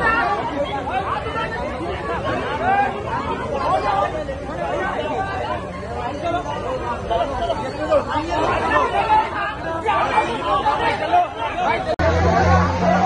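Crowd of men talking over one another, many voices at once with no single voice standing out.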